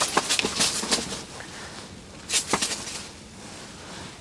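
Handling noise from an angler working an ice-fishing rod and reel: scattered light clicks and rustles in the first second, and a short burst of them about two and a half seconds in.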